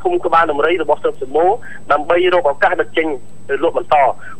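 Speech only: a news narrator's voice talking steadily, most likely in Khmer.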